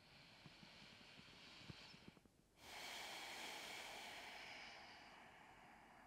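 Slow, audible breathing close to the microphone: a faint inhale of about two seconds, a brief pause, then a louder, longer exhale that fades away.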